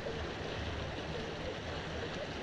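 Steady rush of a river's current flowing over shallow, rippled water.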